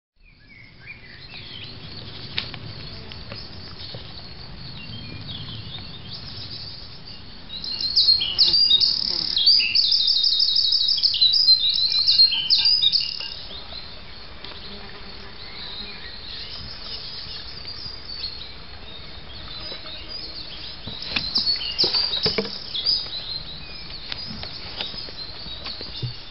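A songbird singing in loud bursts of varied high chirps with a fast trill, for several seconds about a third of the way in and again more briefly near the end, over a faint steady background of insects.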